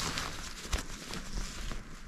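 Rustling and a few light ticks and taps from someone moving about inside a tent.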